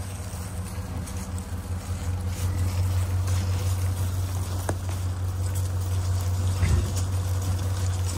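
Truck engine running with a steady low hum.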